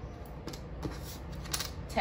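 Small wooden letter tiles clicking against one another and the tabletop as they are slid and arranged by hand: a few separate light clicks, the loudest about one and a half seconds in.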